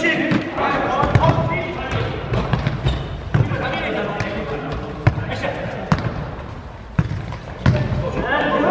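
Futsal ball kicked and passed on a hard indoor court, about five sharp knocks in the second half ringing in a large sports hall. Players' voices call out, mostly in the first few seconds.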